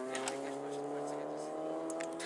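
A rally car's engine held at high revs as the car approaches, a steady note rising slightly in pitch.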